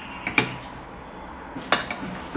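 Metal fork clinking against a dish while eating: a couple of sharp clicks about a third of a second in and a quick cluster of clicks near the end.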